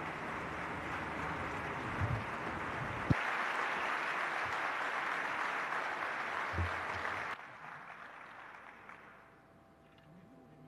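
Audience applauding in a conference hall at the end of a speech, with a single knock about three seconds in; the clapping drops off sharply about seven seconds in and fades away.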